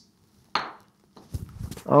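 A golf ball dropped onto the floor hits with one sharp click about half a second in, followed by a few softer knocks as it bounces only a little.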